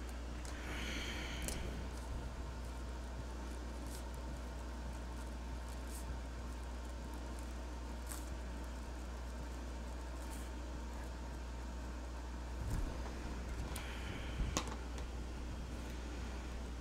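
Steady low electrical hum of room tone under quiet tabletop handling: faint clicks of marker barrels and caps, and a couple of short scratchy strokes of a pen or marker tip on paper, about a second in and near the end.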